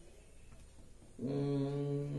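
Quiet room tone, then about a second in a man's voice starts one long, level hum at a single unchanging pitch.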